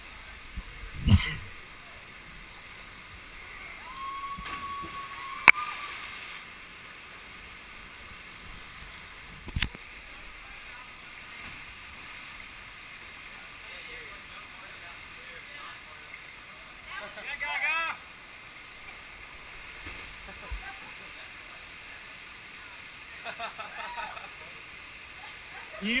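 Steady rush of a waterfall pouring into a canyon pool, heard from a camera at water level, with a few sharp knocks and splashes of water close to the camera. High-pitched distant shouts come twice in the second half.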